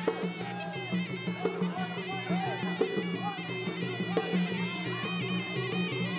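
Traditional Kun Khmer fight music: a sralai reed pipe playing a nasal, ornamented melody that bends and slides in pitch over a steady low accompaniment.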